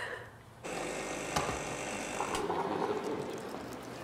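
Drinks vending machine running, a steady mechanical whir with a thin high whine that starts suddenly about half a second in, with a sharp click a little later.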